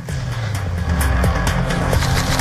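Television transition sting: music over a deep rumble like a car engine, which fills out into a louder, brighter noise about a second in.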